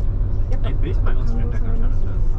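Steady low engine and road rumble heard from inside a moving bus, with people talking over it.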